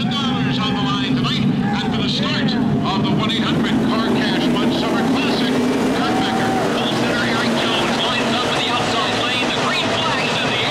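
A field of NASCAR Camping World Truck Series trucks racing in a pack on a dirt oval, their V8 engines running together in one loud, continuous sound, with many engine notes overlapping and sliding up and down in pitch as the trucks pass.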